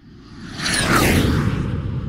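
Jet airplane flyby sound effect: a rumble that swells out of silence to a peak about a second in, with a falling whine on top, then slowly eases off.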